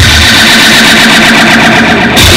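Loud distorted electric guitars from a live punk-rock band sustaining a noisy drone with a steady high feedback tone. It cuts off suddenly at the very end.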